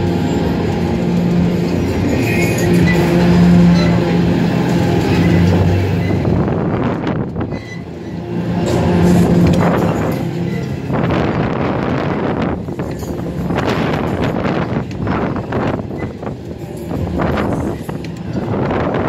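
Onride sound of a spinning fairground thrill ride: fairground music over the ride's running noise, with wind gusting on the microphone in the second half as the gondola swings through the air.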